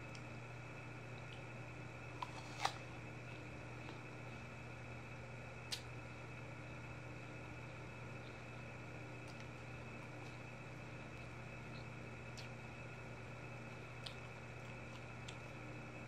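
Steady mechanical hum made of several even tones, like a small motor or appliance running, with a few faint clicks; the sharpest click comes nearly three seconds in.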